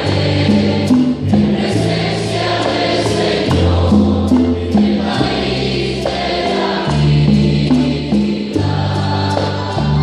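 Live amplified worship music: voices singing a hymn over a band, with a bass line that steps from note to note every half second or so.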